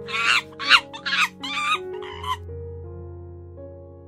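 A quick run of about six short, chattering animal calls over the first half, then they stop. Soft background music with sustained notes plays throughout.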